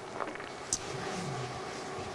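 Felt chalkboard eraser wiped across a blackboard: a steady rubbing swish, with a couple of brief light taps in the first second.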